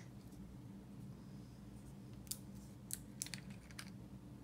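A few faint, sharp clicks in the second half from a small glass essential oil bottle being handled and its cap twisted, over a low steady hum.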